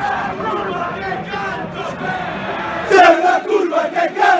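Football supporters in the stands chanting together, a mass of voices sung in unison; about three seconds in the chant swells louder as the fans nearby join in.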